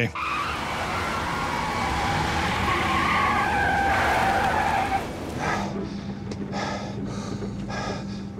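Tyres of a McDonnell Douglas MD-83 airliner skidding and screeching along the runway pavement in a hard touchdown for about five seconds, then a quieter rolling rumble with a steady low hum.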